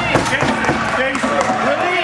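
Several players' voices shouting and calling over one another in a large echoing indoor sports hall, with scattered sharp knocks among them.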